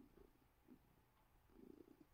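Faint purring of a long-haired calico cat being stroked, coming and going in soft pulses.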